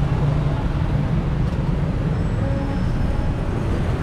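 Steady city street traffic noise: a continuous low engine rumble from passing vehicles, with no single event standing out.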